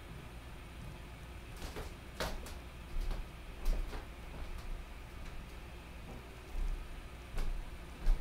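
Quiet drawing sounds: a fine-tip ink pen working on watercolor paper, with a handful of short scrapes and soft knocks as the paper and hand move on the table.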